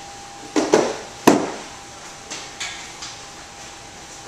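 A steel-framed adjustable weight bench being lifted, moved and set down on the floor: a few knocks and clunks, two quick ones about half a second in, the loudest just after a second, then lighter ones.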